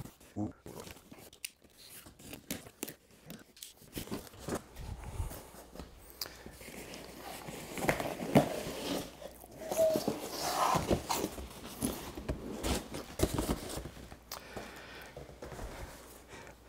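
Cardboard shipping box and a padded fabric gig bag being handled: irregular scraping, rustling and knocking of cardboard and fabric, busiest in the middle.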